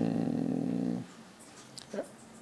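A man's drawn-out hesitation sound, a held "uh" on one pitch. It turns into a creaky rasp and stops about a second in.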